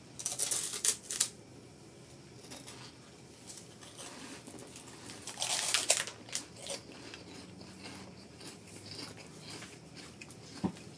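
Crunching bites into a puffed snack stick, with crinkling of its plastic wrapper: one burst of crunching right at the start lasting about a second, and another about five and a half seconds in.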